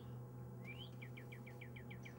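A bird singing faintly: two short rising whistles, then a quick trill of about seven repeated notes a second, over a steady low hum.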